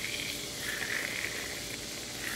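Quiet outdoor background with a faint, wavering high buzz of insects that swells twice.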